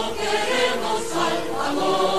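Choral music: a choir singing held chords.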